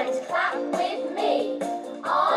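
Children's chant from an English course audio recording: young voices chanting food words in rhythm over a musical backing with a steady beat, about two beats a second.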